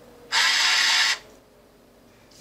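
ICT BL-700 bill acceptor powering up: its small motor-driven bill transport whirs steadily for just under a second, starting about a third of a second in, as part of its start-up sequence.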